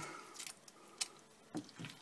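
Faint wet squelching of a spoon scooping thick corn mash in a pot, the mash now wet as the barley malt's enzymes turn its starch to sugar, with a single sharp click about a second in.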